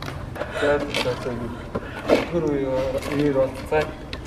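Speech: two people talking to each other.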